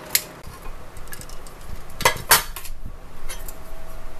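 Metal clicks and clanks of a stovetop pressure cooker's lid being unlocked and lifted off once its pressure is gone, with two sharp metal clinks about two seconds in.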